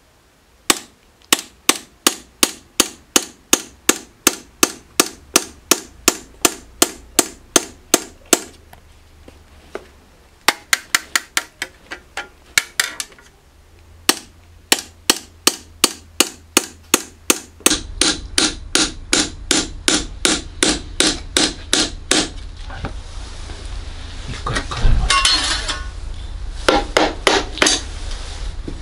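Hammer tapping a hand chisel into a copper grater plate, each blow raising one tooth of a handmade grater. The metallic strikes come at about three a second in runs, with short pauses between rows.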